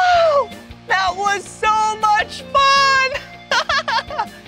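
A man's excited wordless exclamations, a rising-and-falling "whoa" at the start and held whoops after, over background music.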